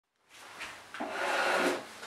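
A scraping rub against wood that builds up, is loudest for just under a second in the middle, then eases off.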